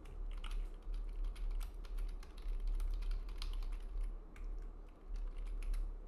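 Typing on a computer keyboard: an uneven run of quick keystrokes, over a low steady hum.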